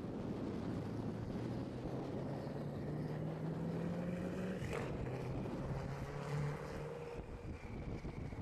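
Koenigsegg Agera RS twin-turbo V8 pulling away at modest revs, its engine note climbing slowly twice, with a short sharp sound a little past halfway.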